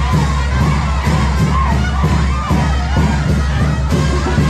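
A dense crowd shouting and cheering over live banda music with a heavy, steady bass.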